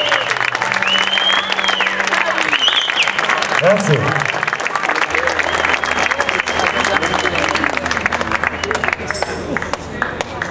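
Audience applauding, with voices calling out over the clapping; the clapping thins a little near the end.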